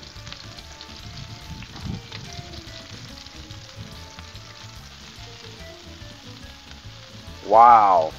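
Breaded shrimp shallow-frying in a layer of hot oil on a Blackstone flat-top griddle, with a steady sizzle.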